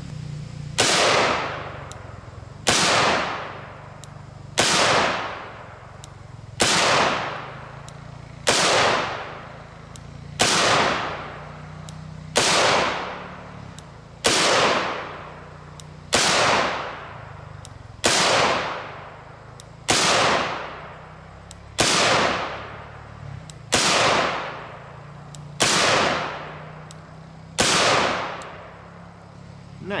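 Kel-Tec RDB bullpup rifle firing 5.56 NATO M193 55-grain FMJ rounds in slow, evenly paced semi-automatic fire. There are about fifteen shots, one every two seconds or so, each with a sharp crack that trails off over about a second.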